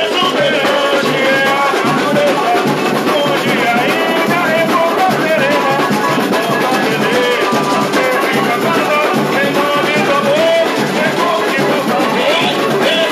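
Samba-enredo performed live through loud PA speakers: a male lead singer over a steady band and percussion beat.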